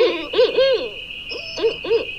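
A recording of owls calling at night: a run of short hoots, each rising and falling in pitch, about five in quick succession.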